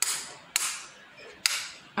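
Three sharp clicks, one at the start, one about half a second in and one about a second and a half in, each trailing off in a short fading hiss.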